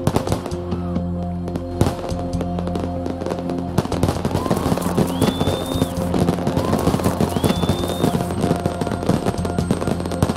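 Fireworks popping and crackling in quick succession over background music with sustained notes. Two rising whistles come through about halfway.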